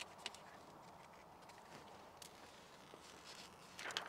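Near silence with faint handling noise: a few soft clicks early on and a brief rise of rustling just before the end, as a sheet of plastic screen-protector film is handled and its backing peeled off.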